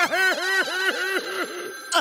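Cartoon alarm clock ringing loudly: a rapid warbling ring that rises and falls about seven times a second for a little over a second, then weakens.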